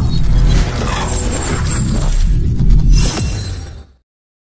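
Channel logo intro sting: loud layered sound effects over a deep bass rumble, with sweeping swells near the start and about three seconds in, fading out just before the end.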